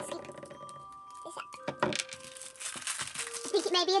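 Plastic wrapper from an L.O.L. Surprise toy crinkling and tearing as it is pulled open by hand, with the crinkling getting busier about halfway through.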